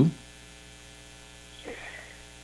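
Steady electrical mains hum with many overtones in the recording, after a voice's last word trails off at the very start. A faint brief sound comes near the end.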